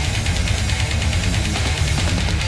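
Fast, loud metal music: distorted electric guitars and bass over dense drumming with cymbals.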